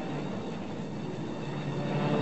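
A steady low rumble, a cartoon sound effect for molten lava flowing into the caverns.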